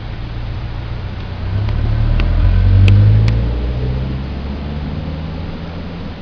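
A car passing on the road: a low engine and tyre rumble that swells to its loudest about three seconds in and then fades. A few light clicks come while it is loudest.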